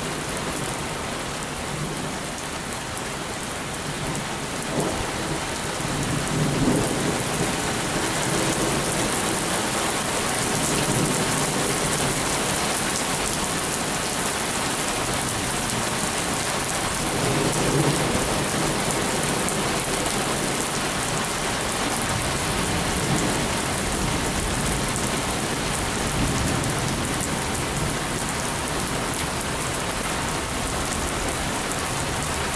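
Heavy rain pouring steadily during a thunderstorm, growing louder about six seconds in, with low rolls of thunder twice: once about six seconds in and again about eighteen seconds in.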